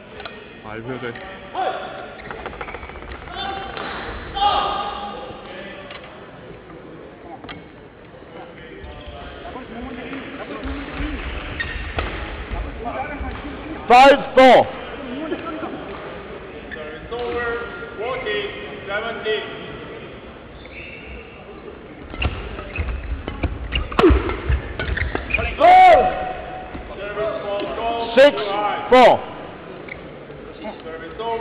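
Sneakers squeaking on an indoor badminton court: a pair of sharp squeaks about halfway through and several more near the end, with a few sharp hits and players' voices between them.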